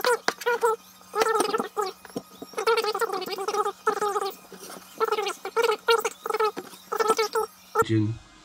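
A garbled, speech-like voice in short syllables over a steady low hum, with sharp clicks among it. The whole sound cuts off abruptly near the end.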